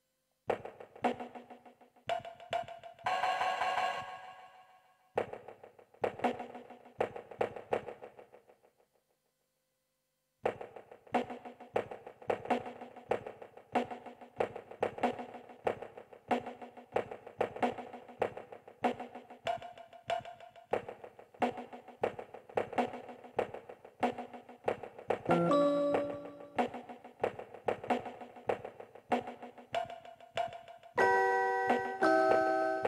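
Small electronic keyboard playing a lo-fi hip hop beat: a drum pattern with short pitched keyboard notes over it. It breaks off about eight seconds in and, after a short silence, starts again as a steady repeating loop.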